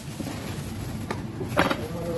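Busy background noise with two brief knocks: a faint one about a second in and a louder, sharper one about one and a half seconds in.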